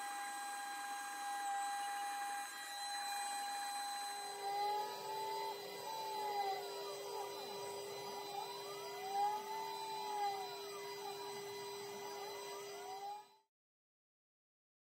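Glowforge laser cutter running a cut, played back at four times speed: its motors whine in repeated rising-and-falling pitch arches as the head traces circles, over a steady machine hum. The sound cuts off suddenly near the end.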